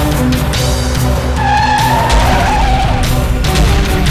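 Car tyres screeching in a skid: a wavering squeal starting about one and a half seconds in and lasting just over a second, over background music with sustained low tones.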